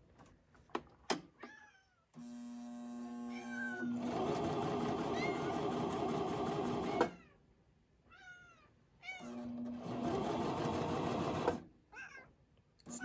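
Coverstitch machine, freshly rethreaded from scratch, running in two bursts of stitching: one about two seconds in that builds and runs for about five seconds, and a shorter one near the end, each with a steady hum. A cat meows in the gap between them.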